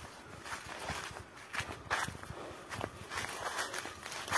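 Footsteps on dry leaf litter and through dry scrub, with uneven steps of about two a second and the rustle of brushed twigs and leaves.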